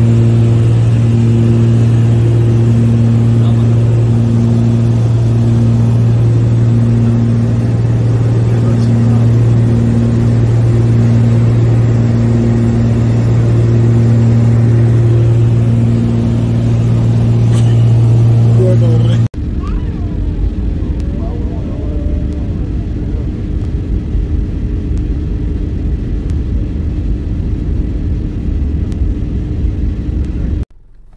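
Aircraft engine noise heard from inside the cabin in flight: a loud, steady low drone with a higher tone that pulses on and off about once a second. About two-thirds of the way through it cuts to a different, lower and rougher steady cabin rumble.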